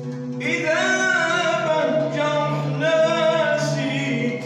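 A voice singing an Arabic song to oud accompaniment. The voice comes in about half a second in with wavering, ornamented held notes over steady low plucked notes.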